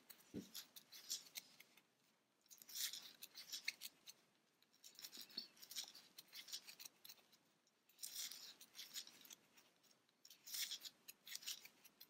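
Faint scratchy rustling of a crochet hook catching and pulling yarn through single crochet stitches, in short bursts every two to three seconds. There is a soft low knock just after the start.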